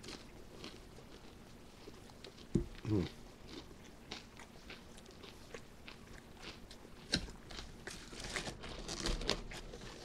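Close-miked chewing of crunchy breaded chicken, a run of short sharp crunches that grows busier near the end, with a brief 'mm' of approval about three seconds in.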